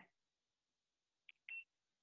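Near silence, with a faint, short, high electronic beep about one and a half seconds in.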